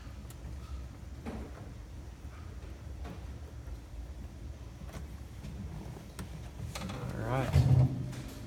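Faint clicks and rustling of wiring being handled over a low, steady rumble. Near the end comes a brief voice and a heavy thump from the phone camera being moved.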